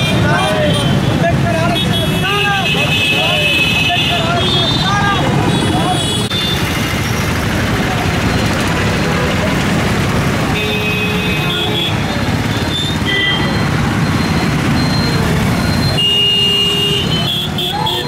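Street traffic with vehicle horns sounding several times, under a mix of people's voices.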